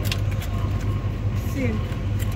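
Supermarket background noise: a steady low hum from the refrigerated display cases, with a few soft clicks just after the start and a brief snatch of voice near the end.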